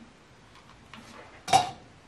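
Faint handling noise while a hot-glue gun and a plastic ornament with its metal cap are worked, with one sharp, short clink about one and a half seconds in and a lighter tick just before it.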